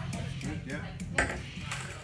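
A single sharp clink a little over a second in, over low murmuring voices.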